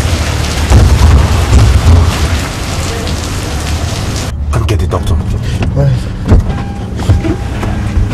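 Heavy rain falling on wet pavement, which cuts off abruptly about four seconds in. A car's engine then runs quietly, with several sharp knocks and clicks.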